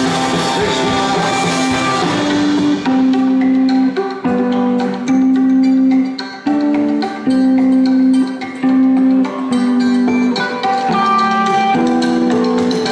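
Live rock band playing an instrumental passage with no vocals. About three seconds in, the dense full-band sound thins out to electric guitar playing a repeating figure of held notes with short breaks between them.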